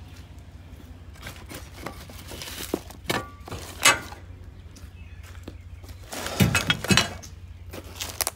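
Metal clinks and knocks as the steel tarp roll bar of a dump trailer is worked into its end bracket and locked down. A few light clinks come first, then one louder knock about four seconds in and a quick run of loud clanks a little after six seconds.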